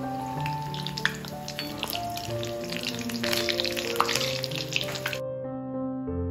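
Hot oil sizzling and crackling as breadcrumb-coated chicken cutlets deep-fry in a cast-iron kadai, under background piano music. The frying sound cuts off suddenly about five seconds in, leaving only the music.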